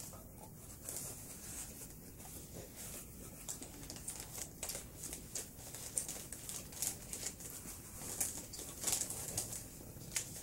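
Quiet chewing of a soft giant cookie, with faint scattered clicks and light crinkles of its plastic wrapper being handled.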